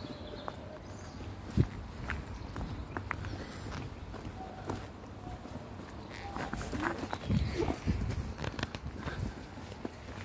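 Footsteps on a tarmac path, with scattered clicks, rustles and a low rumble of handling noise. The loudest event is one sharp knock about a second and a half in, and the steps and rustles grow busier in the second half.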